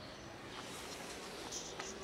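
A cat chewing dry kibble: faint scratchy crunching with a few sharp clicks.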